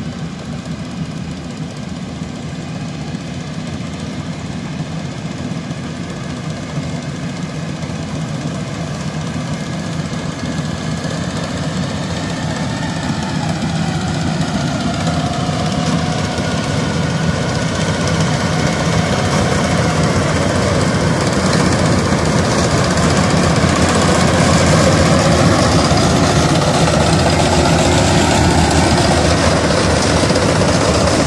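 Yanmar rice combine harvesters' diesel engines running steadily under load as they cut, growing louder as the nearer machine comes close. The engine note shifts in pitch partway through.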